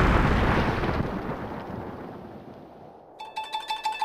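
A loud cartoon boom's rumble dying away over about three seconds. About three seconds in, a plucked-string music cue with a repeating note begins.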